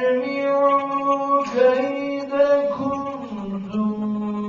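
A man reciting the Quran in a melodic, chanted style, drawing out long held notes with ornamented turns in pitch. The pitch steps down to a lower held note about three seconds in.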